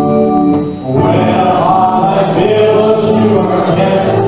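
A hymn sung by voices with organ accompaniment: held organ chords for the first second, a brief dip, then the singing comes in over the organ.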